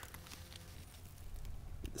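Faint rustling and handling noise as the camera is pushed in among squash leaves, with a few light ticks over a low rumble.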